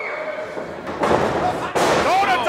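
Live wrestling crowd noise swelling about a second in, ending in a sharp, loud slam as two wrestlers collide and crash onto the ring mat.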